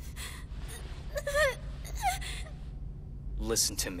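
A young girl crying: gasping sobs with two short wavering whimpers, about a second and two seconds in, over a low steady hum. A man's voice starts near the end.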